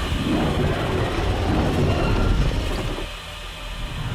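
Film sound effects of Mechagodzilla powering up: a loud, dense mechanical rumble and rush of energy that eases off about three seconds in.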